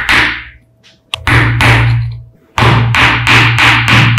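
Small hammer tapping repeatedly on a small wooden block with a felt pad on top, in quick runs of taps.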